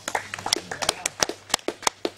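A quick run of sharp slaps and taps, about eight in two seconds, from a broadsword form being performed.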